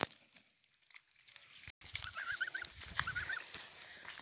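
Young domestic geese giving faint, quick peeping calls in two short runs, about two seconds in and again about three seconds in.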